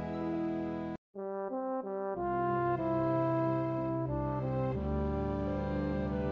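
A tuba playing a short phrase of stepping notes, a few quick ones followed by longer held low notes. It starts after a brief dropout about a second in, cutting off the music that came before.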